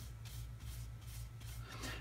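Flat paintbrush stroked back and forth over cardstock, spreading black paint: a faint, soft rhythmic brushing of about three or four strokes a second.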